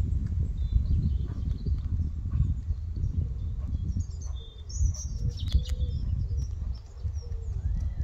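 Hoofbeats of a trotting horse on a soft chip-covered arena surface, under a loud, uneven low rumble. Birds chirp briefly in the middle.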